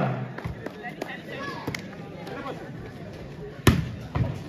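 Volleyball being played: a few light knocks in the first two seconds, then one hard, sharp smack of the ball near the end as players attack at the net, over low crowd chatter.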